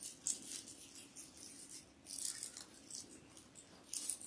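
Prefilled plastic communion cups being peeled open and handled: faint scattered crinkles and light clicks of thin plastic.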